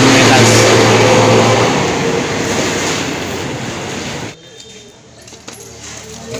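A motor vehicle's engine noise with a low steady hum, loud and then fading away, with voices at the start; the sound cuts off suddenly about four seconds in.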